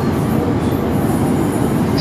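Steady, loud rumbling of an approaching Class 201 'Hastings' diesel-electric multiple unit, with no clear pitch.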